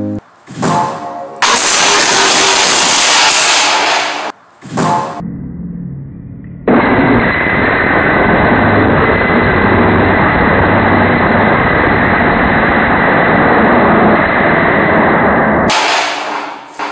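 A 20-foot, 700-plus-pound steel I-beam crashing onto a concrete floor after a fall from a balcony: a very loud crash about a second and a half in. Later comes a long, duller crashing noise lasting about nine seconds. The impact bends the beam.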